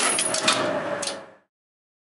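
Relays in an Express Lifts relay-logic lift controller clicking three times, about half a second apart, over a steady hum and hiss. The sound fades and cuts to silence about a second and a half in.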